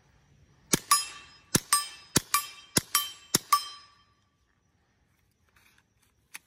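Five quick suppressed .22 LR shots from a KelTec CP-33 pistol, about a second and a half of fire in all. Each shot is followed a fraction of a second later by the ringing ping of a steel target being hit.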